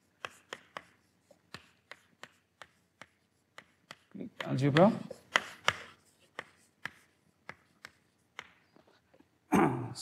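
Chalk tapping and scraping on a blackboard as letters are written, a string of sharp little clicks at an uneven pace. A man's voice speaks briefly about four seconds in.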